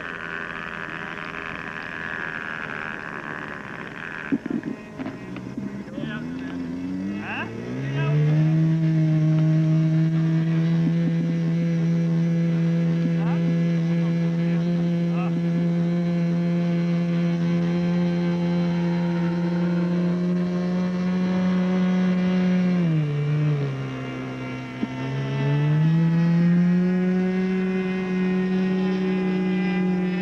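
Model airplane's small glow-fuel two-stroke engine running up. It catches about six seconds in and climbs quickly to a steady high-pitched buzz. Near the end it is throttled down briefly and opened back up to full speed.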